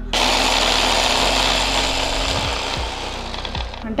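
Inalsa electric hand blender on its chopper attachment, running steadily at speed for nearly four seconds to chop green chillies, then switched off.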